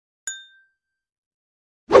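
A single short, bright metallic ding sound effect that rings briefly and fades within half a second, followed by silence. A sudden loud hit comes right at the end.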